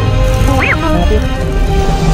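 Background music with a BB-8 droid's electronic chirp: one quick warbling rise and fall about half a second in.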